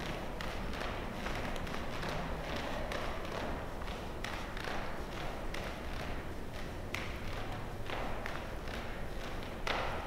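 Faint taps and soft thuds of a barefoot person shifting on a yoga mat over steady room noise, with a slightly louder knock near the end.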